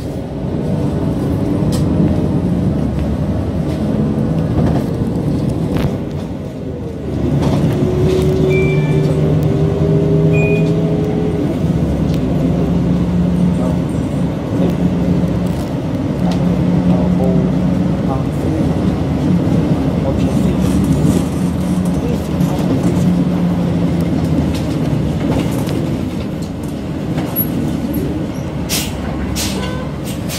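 City bus engine and road noise heard from inside the moving bus. About seven seconds in it eases off, then pulls away again with a slightly rising whine.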